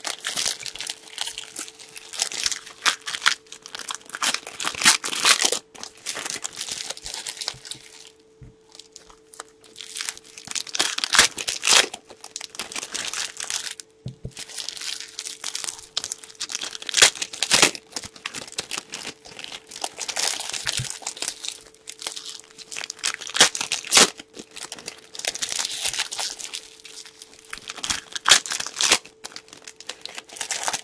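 Foil trading-card pack wrappers crinkling and tearing as packs are opened, with cards handled and set down on the table. It comes in repeated bursts, with a short lull about eight seconds in.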